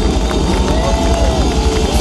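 Live rock band playing loudly, with heavy bass, drums, electric guitar and keyboards, and a held melody line that bends in pitch.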